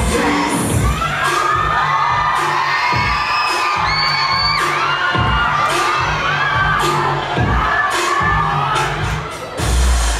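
K-pop dance track played loud over a PA with a steady heavy beat, while the audience screams and cheers over it.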